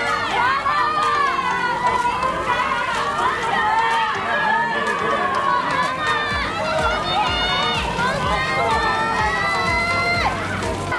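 A crowd of fans shouting and calling out over one another in high voices toward the posing performers, with scattered sharp clicks.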